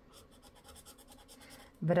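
A pointed tool scraping the coating off a scratch-off lottery card in quick, repeated short strokes. The sound is faint and scratchy.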